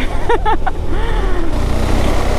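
KTM 390 Adventure's single-cylinder engine running under way, with wind and road noise. The engine note changes about one and a half seconds in.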